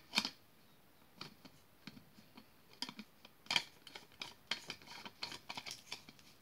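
Plastic drinking bottle handled close to the microphone: two sharp clicks at the start, then a run of irregular small clicks, taps and crackles of its plastic cap and body, thicker in the second half.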